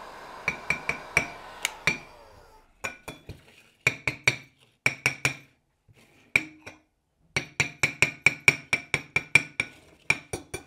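A metal car thermostat, heated to soften its wax, is tapped repeatedly against a ceramic plate to shake the wax out. The taps are sharp and ringing, in short runs and then a quick steady run of about five a second near the end. Before that, a heat gun's steady blowing fades out in the first couple of seconds.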